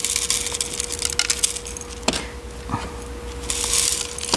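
Coarse masa (decomposed granite) grit poured from a plastic scoop onto potting soil as a top dressing, a trickling rattle of small grains with a few clicks, strongest in the first second or so and again near the end.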